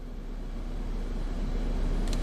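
Steady low rumble of an aircraft's engines heard from inside the cabin, slowly growing louder.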